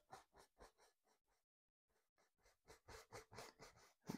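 Near silence, with faint scratchy strokes of a small fan brush dabbing oil paint onto canvas, a little more audible about three seconds in.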